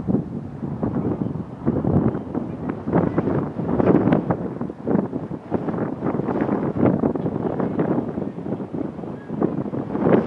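Indistinct talk in the background, with wind noise on the microphone.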